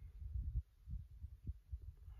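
Wind buffeting a clip-on microphone: a low, uneven rumble with a few soft thumps.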